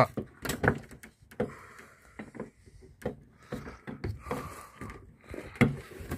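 Hands working at a camper van's side window fittings: irregular clicks and knocks, with a couple of short stretches of scraping or rubbing.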